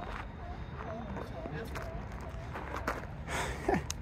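Faint distant voices of people talking, over a steady low rumble, with a few soft clicks near the end.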